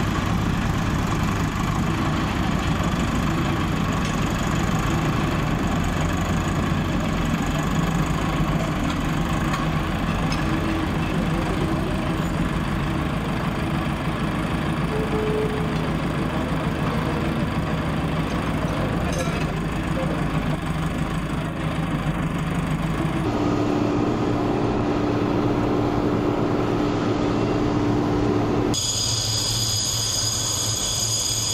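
Tractor diesel engine idling steadily. A little over twenty seconds in the sound cuts to a different steady hum, and just before the end it gives way to a high-pitched whine.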